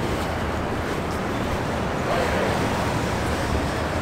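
Steady city traffic noise, a continuous low rush of passing cars, with wind on the microphone.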